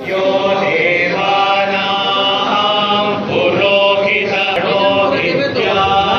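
A group of monks chanting together in unison, many voices held at a steady loud level.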